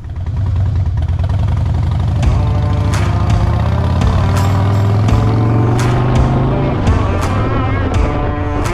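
Rock music with guitar comes in over a steady low drone, with regular drum strikes from about two seconds in.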